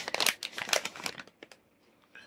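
Plastic packaging bag crinkling and rustling as it is handled, in quick irregular crackles that die away about a second and a half in.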